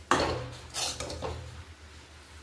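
Metal spatula scraping and knocking against a steel kadhai and a steel tiffin box while cooked upma is scooped across: one sharp clank at the start, then two softer scrapes about a second in.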